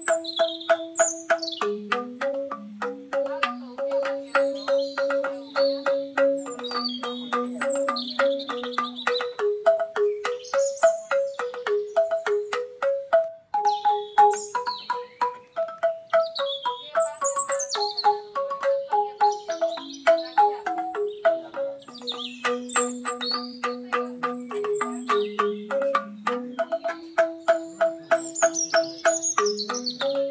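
Banyuwangi angklung music: bamboo xylophones struck in fast, rapidly repeated notes, playing a stepping melody over a lower part, with birds chirping over the music.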